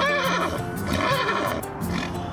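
A horse whinnies once, a wavering call that falls in pitch, in the first half-second, over background music.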